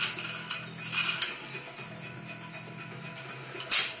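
Plastic toy car handled and pushed across a tile floor: a few quick clicks and clatters in the first second or so, then one loud, sharp clack near the end.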